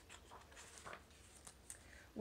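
Faint rustling and a few soft taps of a picture book's page being turned by hand.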